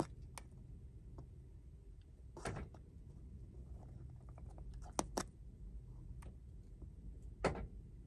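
A few faint, sharp clicks spread over several seconds over a low hum, with a quick double click about five seconds in and a last clunk near the end: presses on a SwitchBot remote's button and a Ford Transit van's central door locks engaging.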